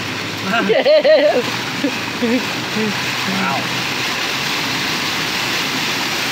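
A vehicle ploughing through deep floodwater, its tyres throwing up spray that rushes and splashes against the body, a steady rushing noise that swells a little toward the end, heard from inside the vehicle.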